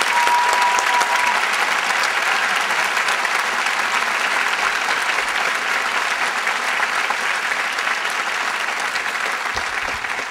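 Audience applauding steadily, easing slightly near the end. A brief steady tone sounds over the clapping in the first second.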